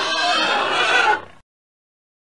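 Domestic pig squealing and grunting, stopping a little over a second in.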